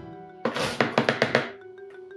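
A clatter of rapid sharp clicks, lasting about a second, from cat litter rattling in a plastic litter scoop as it is sifted, over background music.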